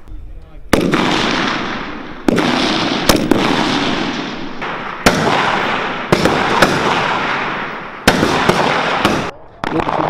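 SA80 rifle firing single shots, about eight at uneven intervals, each followed by a long echo that dies away over a second or more.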